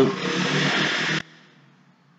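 A steady rushing noise that cuts off suddenly just over a second in, leaving only faint background.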